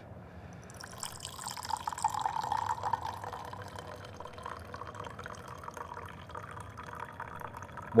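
Tea poured in a thin stream from a clay gaiwan into a glass pitcher. The pour starts about a second in and trickles steadily as the pitcher fills.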